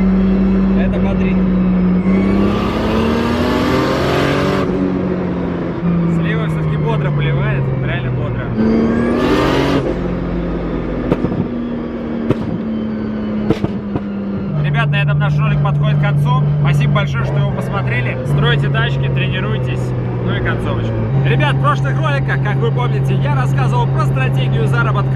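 Nissan 200SX engine heard from inside the cabin, revving up twice and dropping in pitch between gear changes, then running at a steady cruise. Sharp pops and crackles come through, the sound of its pop-and-bang ("popcorn") exhaust tune.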